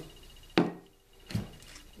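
Plastic acrylic paint bottles being handled at the shaker's PVC holder: a sharp click about half a second in and a duller knock a little later.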